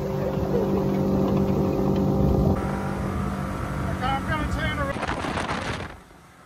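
Motorboat engine running steadily at speed, with rushing wind and water noise. Brief high voices come in about four seconds in, and the sound drops away suddenly at the end.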